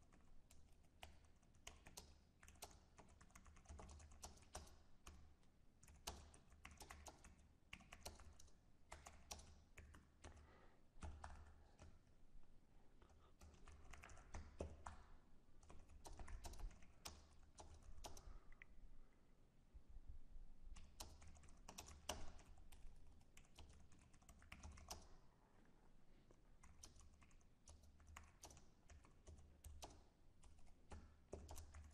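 Faint typing on a computer keyboard: irregular runs of key clicks broken by short pauses.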